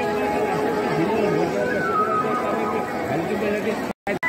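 Crowd of spectators talking, many voices overlapping in a steady babble. Just before the end the sound drops out for a moment at an edit cut.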